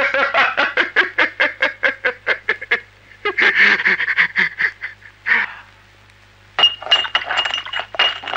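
A man laughing loudly in quick, even bursts that break off about three seconds in, with two shorter laughs after. After a brief pause, a glass bottle strikes the ground with a sharp crash and clink near the end.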